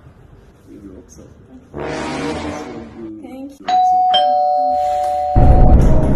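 Doorbell chime ringing a two-note ding-dong, a higher note then a lower one, both held and ringing on together for over a second. Loud music cuts in just after the chime.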